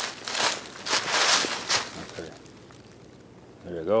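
Footsteps crunching through dry fallen leaves, several steps over the first two seconds, then they stop.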